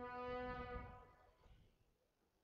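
A single held vuvuzela note, steady in pitch and rich in overtones, fading out after about a second and a half. Low wind rumble on the microphone runs under it.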